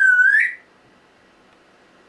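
African grey parrot's loud whistle: one note that dips down and swoops back up, ending about half a second in.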